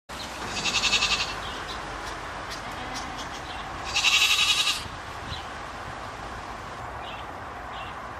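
Goat bleating twice, two quavering calls each under a second long, about three seconds apart.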